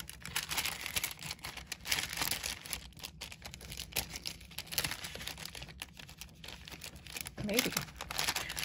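Kraft-paper bakery bag rustling and crinkling in irregular bursts as it is handled and unfolded.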